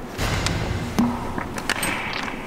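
Handling noise from a Onewheel board being moved about on the floor: a low rumble with one sharp knock about a second in.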